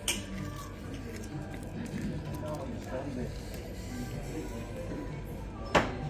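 Background music mixed with faint chatter of other voices, with a sharp click about a second before the end.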